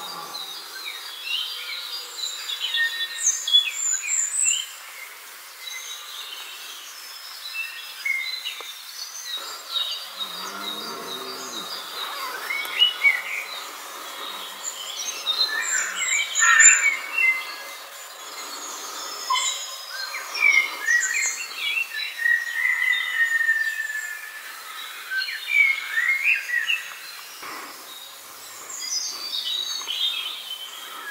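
Several small woodland songbirds calling at once: short high chirps, tweets and quick trills overlapping, with louder bursts around four and sixteen seconds in.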